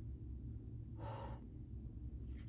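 A woman's soft sigh, one breath out about a second in, from someone aching and worn out after a vaccine booster. A low steady hum runs underneath.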